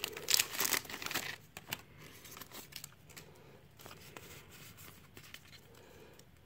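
Foil wrapper of a Pokémon Evolutions booster pack crinkling and tearing as it is forced open, a stiff pack that is hard to tear. The crackling is loudest for about the first second and a half, then drops to faint rustling of handling.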